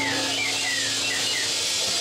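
Live band's electric guitar playing a quick run of short falling slides over a held low note, with a steady hiss behind.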